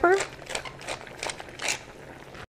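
Hand-twisted pepper mill grinding peppercorns in a run of short, crunchy grinds, about two or three a second.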